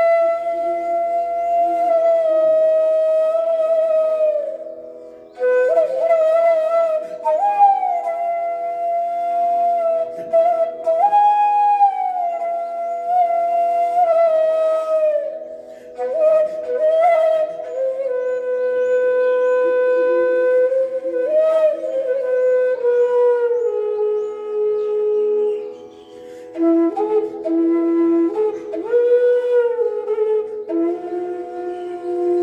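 E-base bansuri (bamboo transverse flute) playing an alap-like melody in Raag Manjari: held notes joined by slides, in phrases with short pauses for breath. A steady drone sounds underneath throughout.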